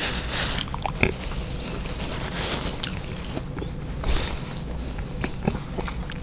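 Close-miked eating sounds: chewing and breathing, with a paper napkin wiped across the mouth at the start. Several short hissy breaths or rustles and scattered small mouth clicks.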